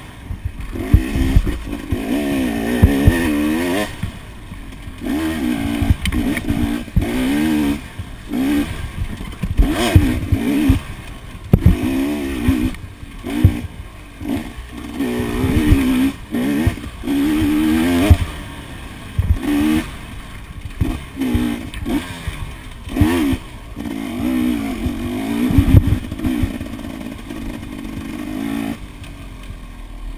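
Off-road motorcycle engine revving up and down constantly as it is ridden hard along a rough trail, its pitch rising and falling every second or two. Frequent knocks and rattles come from the bike jolting over the ground, and it eases off near the end.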